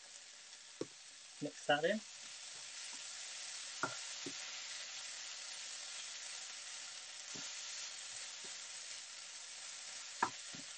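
Chicken pieces sizzling in a hot frying pan, the sizzle growing louder about two seconds in once squeezed ginger goes in. A wooden spoon stirs the pan, knocking against it now and then.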